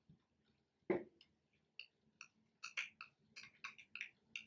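Faint, wet clicks and light taps as a thick paste of turmeric and aloe vera gel is poured from a glass bowl into a small glass jar. There is one soft knock about a second in, then irregular short clicks a few times a second.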